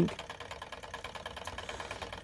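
Small model Stirling engine running steadily, a fast, even mechanical ticking from its piston and spinning flywheel.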